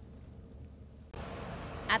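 Steady low vehicle hum, cutting about a second in to louder outdoor motor-vehicle noise with a faint steady drone.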